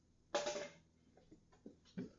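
A homemade mild steel buckler struck once, giving a sharp hit with a short metallic ring, followed by a few light knocks as it is handled.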